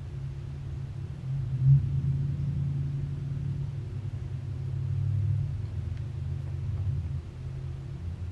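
A low, steady rumble or hum, swelling and easing, with a brief louder bump a little under two seconds in.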